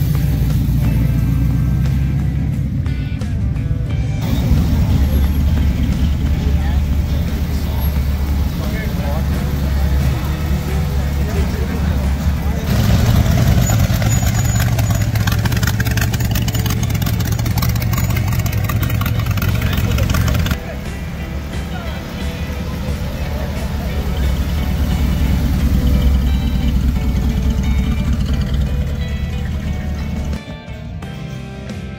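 Car engines running and revving as cars drive slowly past one after another, with music playing throughout.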